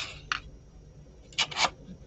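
Short scraping and clattering handling sounds of small craft tools and wood on a work table: a couple of quick strokes at the start and a quick pair about a second and a half in.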